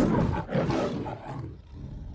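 A loud, rough roaring sound effect, strongest at first and fading, with a brief dip about half a second in.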